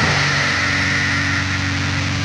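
Black metal band from a lo-fi four-track recording: distorted electric guitars and bass holding a steady low chord under a dense wash of noise.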